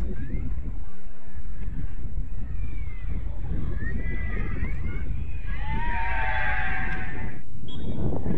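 Wind buffeting the microphone, with distant shouts of people on the pitch. About five and a half seconds in, a loud shout lasts nearly two seconds and then cuts off.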